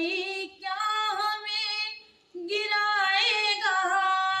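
A woman's voice singing unaccompanied in ornamented phrases with pitch bends, breaking off briefly about two seconds in and then settling into a long held note near the end.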